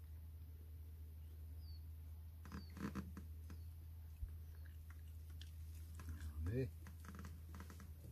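A German hunting terrier taking small morsels from a hand and chewing them, with faint clicking and small mouth sounds. A short voiced sound, rising in pitch, comes about six and a half seconds in.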